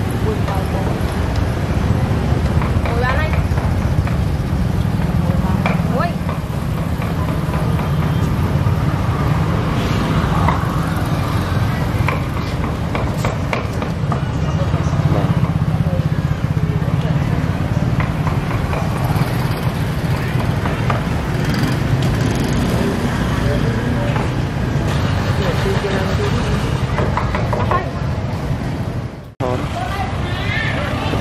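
Busy street-market ambience: a steady low rumble of motorbike traffic under people talking nearby, with a brief break near the end.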